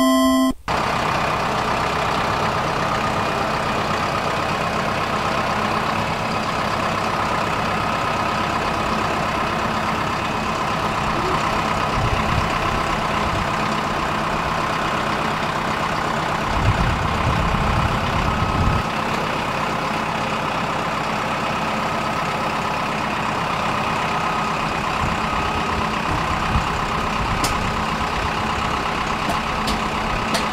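Compact tractor's diesel engine running steadily under load as it drags a 6,000-pound boiler on wooden skids by chains. The engine sound swells heavier around twelve seconds in and again for a couple of seconds past the middle, and there are a few sharp clicks near the end.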